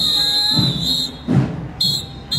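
A shrill whistle blast held for about a second, then a second blast starting near the end. A single thump falls between them.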